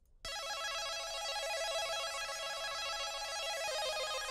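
Serum synth patch from the Space Sauce Volume One pack, played alone as a fast up-and-down arpeggio that starts about a quarter second in. It sits only in the upper range, with no bass or drums under it.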